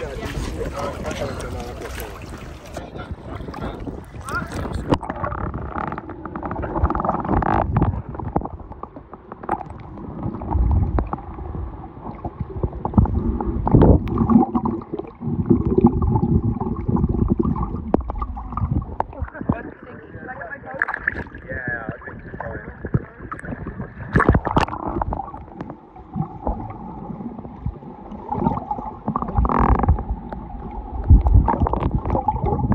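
Sea water heard on a camera microphone as it goes under the surface: open-air splashing and wind for the first few seconds, then a muffled underwater wash with the high end cut off.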